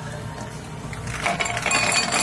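Ice cubes tipped from a scoop into a stemless glass, clattering and clinking against the glass from about a second in, over background music.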